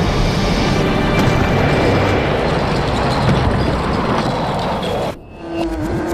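Sound-designed rumble of stone masonry crumbling and collapsing, with music underneath. It drops away sharply about five seconds in, and a few low thuds and a steady low tone begin near the end.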